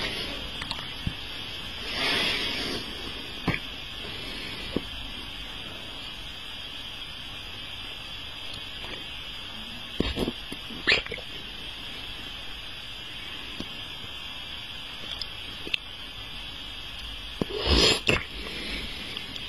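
Mouth sounds close to the microphone: a few short wet clicks and breaths from lips and tongue, over a steady hiss.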